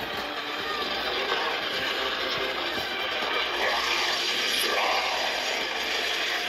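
Film soundtrack of a battle scene, dense action sound effects mixed with music, played back through a screen's small speakers and sounding thin, with almost no bass.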